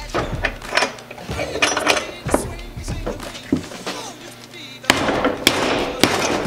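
A short-handled sledge hammer strikes the plastic handle of a Harbor Freight screwdriver clamped in a bench vise. Sharp whacks start suddenly about five seconds in, in a stress test meant to break the handle. Background music plays throughout.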